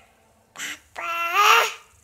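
A toddler's loud vocal call: a short breathy burst about half a second in, then one drawn-out, rising call, with a nasal, duck-like quack quality.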